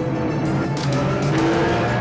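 Porsche 911's flat-six engine pulling hard at high revs, about 4,000 rpm, as the car is driven fast, mixed with a music score.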